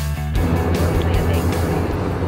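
Background music with a beat. About a third of a second in it changes to a denser, noisier passage over a steady low hum.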